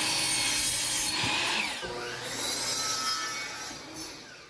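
DeWalt sliding compound miter saw running and cutting through a wooden board to length, the pitch of the cut shifting as the blade goes through. The sound dies away near the end.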